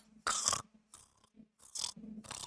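A man imitating snoring with his mouth and nose: a few short, breathy snores, the loudest near the start and fainter ones near the end.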